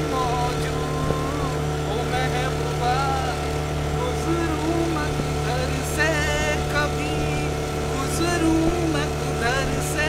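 A boat's motor drones steadily while a man sings a Hindi film melody over it in snatches, his voice rising and falling.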